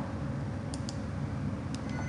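Computer mouse clicks: two quick double clicks about a second apart, over a steady low background hum.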